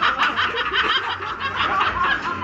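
People laughing in a quick run of short bursts.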